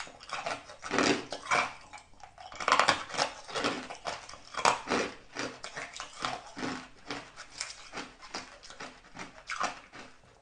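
Close-up biting and crunching of coloured ice in the mouth: irregular crisp crunches several times a second, louder in the first half and lighter chewing later.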